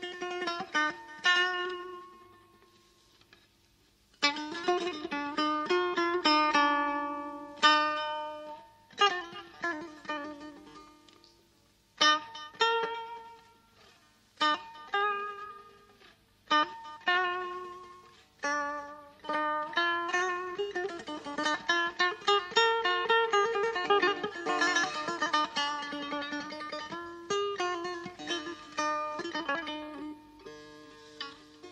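Solo setar playing Persian classical music in the mode Bayat-e Esfahan: phrases of plucked notes and quick runs that ring and die away, broken by short pauses, with a longer gap near the start.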